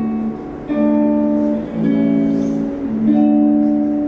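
Guitar playing the closing chords of a country song with no singing: three chords struck about a second apart, each left to ring.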